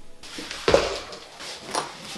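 Handling noise from float-tube gear: short knocks and rustles as a fish-finder mount and its cable are handled against the float tube, with one louder knock under a second in.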